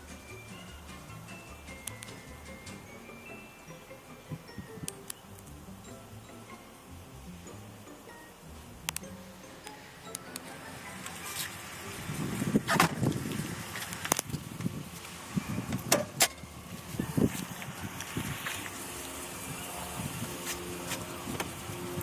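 Faint music with chime-like notes in the first half. About twelve seconds in come a series of knocks and sharp clunks from the pickup's cab door and handling as the door is opened and shut.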